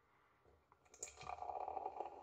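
Beer poured from a bottle into a tulip glass. A click about a second in, then the stream running and frothing into the glass.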